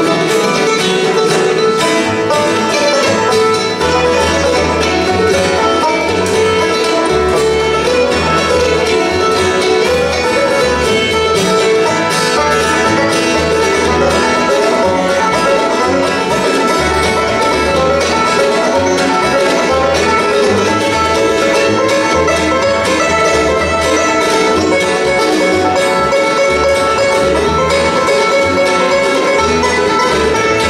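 Bluegrass band playing an instrumental, with banjo, acoustic guitar, mandolin and fiddle over an upright bass line.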